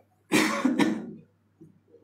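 A man clears his throat with a single short cough into his hand at a podium microphone.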